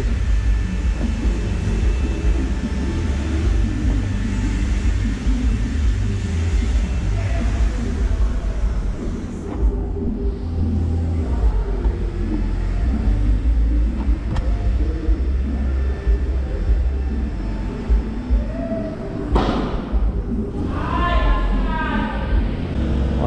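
A steady low rumble throughout, with faint voices in the background and a short burst of voice near the end.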